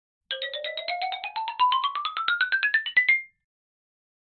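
Short electronic intro jingle: a fast run of short notes, about eight a second, climbing steadily in pitch for about three seconds, then stopping.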